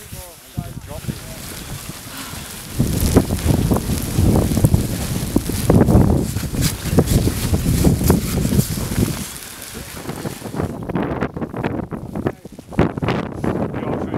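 Wind buffeting the camera microphone in a blizzard: a heavy, gusty rumble that builds about three seconds in, is loudest through the middle, and eases after about nine seconds.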